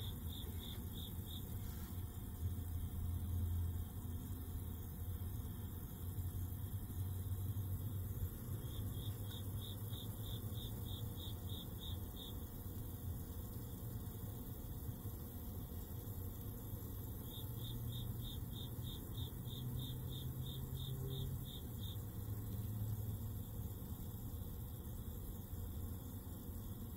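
Low steady hum under a faint hiss from an electrolysis rust-removal setup at work. Three times, a run of rapid high-pitched chirps at about four a second comes in and lasts a few seconds.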